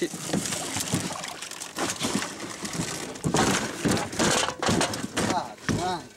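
An alligator gar hauled over the side of a boat, splashing and thrashing, with repeated knocks and thumps against the hull. The splashing and knocking are heaviest a little past the middle. People's voices are mixed in.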